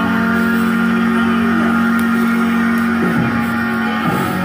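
Harmonica playing a long held chord, with other music behind it. The chord stops near the end.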